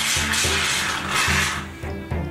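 Aerosol shaving-cream can spraying in two hissing bursts, the second about a second long, over background music with a steady bass beat.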